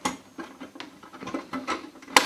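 A few light clicks and scrapes as a drive tray is slid and latched by hand in a steel 5.25-inch hot-swap SSD enclosure, the ICY DOCK MB998SP-B.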